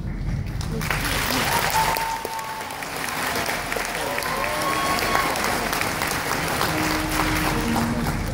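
Audience applauding and cheering, starting about a second in, after a song ends.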